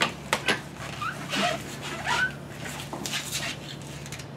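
Electric car polisher with a foam pad running steadily while polish is spread over a door panel, a low even hum, with several sharp clicks and knocks scattered through it from the machine and its cord being handled.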